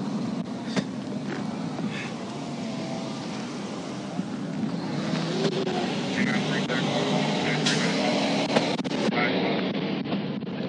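Highway traffic noise with a steady low rumble, heard through a patrol car's dashcam microphone. From about halfway through it grows louder as a semi-truck comes up alongside in the next lane.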